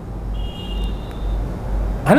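A steady low background hum in a pause between speech, with a faint thin high tone for about a second in the middle.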